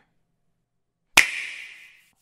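After about a second of dead silence, a single sharp clap-like hit, its hissing tail fading away within a second.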